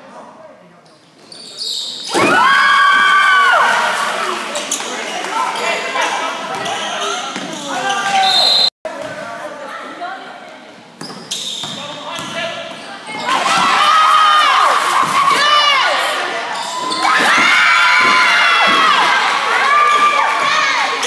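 A basketball bouncing on a hardwood gym floor during play, with players and spectators shouting loudly over it, the shouting swelling about two seconds in and again in the last third.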